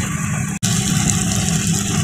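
Chicken, prawn and sausage pieces sizzling steadily as they fry in butter in a wok, over a low steady hum; the sound cuts out for an instant about half a second in.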